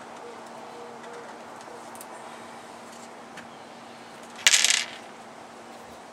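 A short, loud metallic clatter in a stainless steel sink about four and a half seconds in, over a steady low hum.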